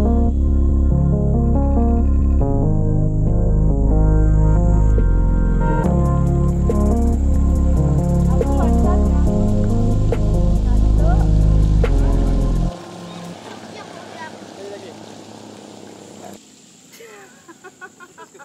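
Instrumental background music with a heavy, sustained bass line and a shifting melody that cuts off suddenly about two-thirds of the way through. It leaves a much quieter outdoor background with a few faint chirps.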